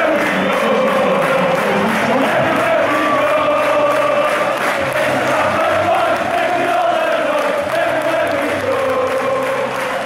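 Closing music carried by a large crowd of voices singing together in a slow, wavering unison melody, at a steady level throughout.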